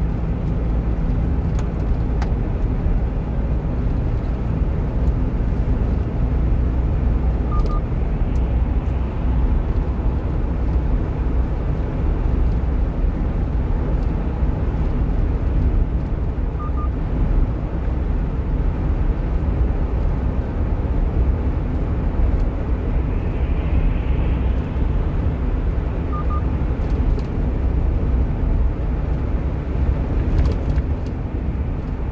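Steady low rumble of engine and road noise inside the cab of a one-ton truck cruising on an expressway.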